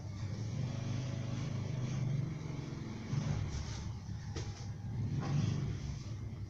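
A motor vehicle's engine running, a steady low drone that comes up at the start and holds with small swells.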